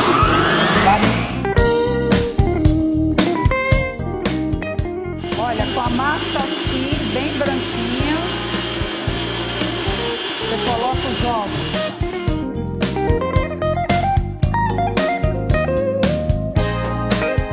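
Background guitar music with an electric stand mixer running steadily under it, beating margarine and sugar into a creamy base for cake batter. There is laughter at the start.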